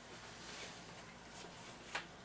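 Quiet room with faint sniffing as glasses of beer are nosed, and one short tap near the end.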